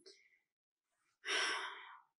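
A woman sighing: one long breathy exhale starting a little past a second in and fading away.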